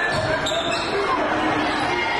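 A basketball being dribbled on a hardwood gym floor, amid the voices of a crowd shouting in a large gymnasium.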